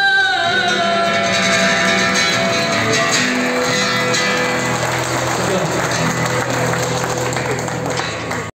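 Song with a held sung note over instrumental music, the note sliding down and ending about half a second in; audience clapping then fills the rest, with the music going on underneath.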